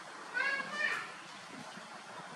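Baby macaque giving a short, high-pitched squealing call about half a second in.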